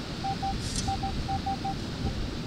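Minelab Equinox metal detector giving short, uneven groups of single-pitch beeps as the coil passes back and forth over a buried target that reads 24 on the screen, a coin taken for a dime. A steady hiss of background noise runs underneath.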